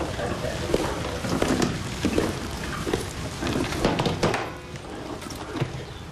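Indistinct low voices that no words can be made out of, dropping quieter after about four and a half seconds.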